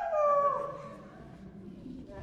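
A performer's howl: one long voiced note sliding downward in pitch and fading out about half a second in, leaving the hall quiet.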